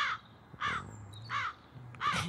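A crow cawing repeatedly: three harsh caws about two-thirds of a second apart.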